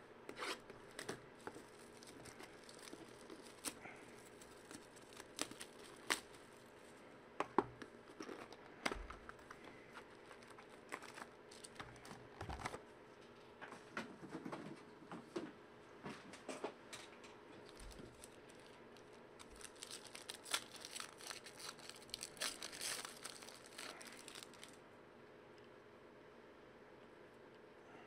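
Foil trading-card pack wrappers crinkling and tearing, with cards being handled, sharp little clicks and rustles scattered throughout. There is a denser run of crinkling about three quarters of the way through.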